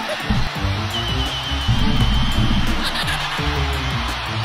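Music with a repeating bass-heavy pattern, and a high thin tone above it that wavers at first and then holds steady.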